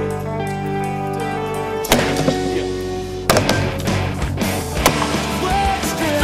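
Music playing throughout, broken by sharp knocks about two seconds in and again a little over three seconds in as a metal pole strikes the wooden speaker cabinet. A smaller knock comes near the end.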